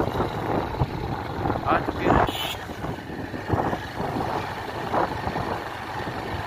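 Motorcycle running at road speed, heard from the rider's seat with road and wind noise, and a short rushing burst about two seconds in.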